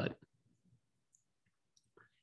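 Near silence after a spoken "but," with a few faint, brief clicks.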